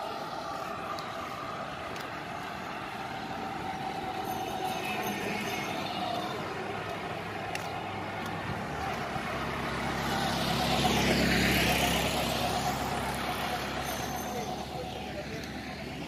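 Road traffic noise, with a motor vehicle passing close by: its rumble builds to a peak about eleven seconds in, then fades away.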